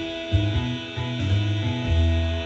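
Steel-string acoustic guitar being played, chords over a low bass note that changes every few tenths of a second.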